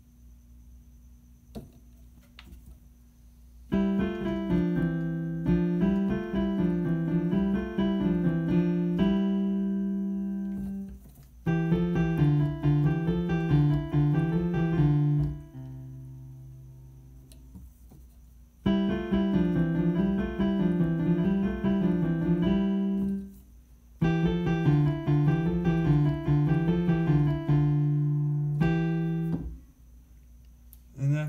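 Piano playing a triplet warm-up exercise with both hands: running triplet figures in treble and bass, moving in step. It starts about four seconds in and comes in four short phrases, each ending on a held note, with brief pauses between.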